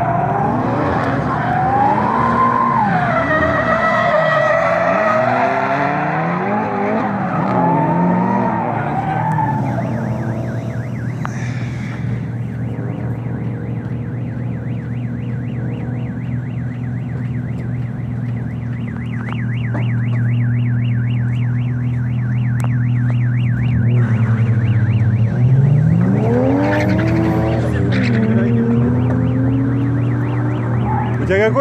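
Drift cars' engines revving up and down as they slide, with tyre skidding, for the first ten seconds or so. Then a car engine idles with a steady hum, and it revs up twice near the end.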